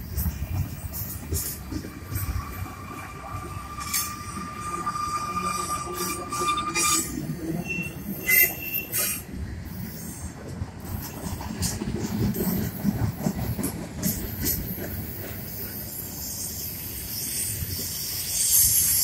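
Freight cars of a mixed manifest train rolling past on a curve: a steady rumble of wheels on rail with scattered clicks. A thin, held wheel squeal runs from about two seconds in to about seven seconds, and shorter high squeals follow around eight seconds.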